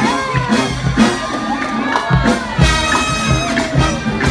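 Brass marching band with sousaphone playing a lively tune with a steady beat, over a cheering crowd.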